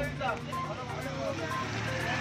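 Van ambulance's engine running with a low steady rumble as it moves off, with voices of people around it.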